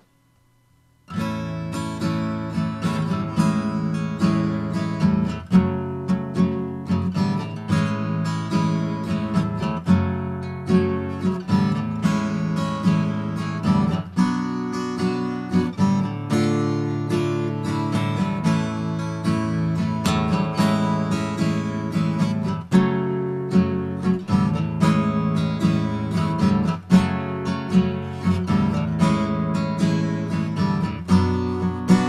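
Steel-string acoustic guitar strumming chords in a steady rhythm, starting about a second in after a brief silence.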